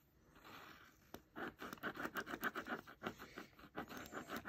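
Black gel pen scribbling on paper in rapid back-and-forth strokes, about five a second, starting a little over a second in.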